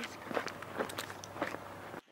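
Footsteps of people walking, a run of short irregular steps a few tenths of a second apart.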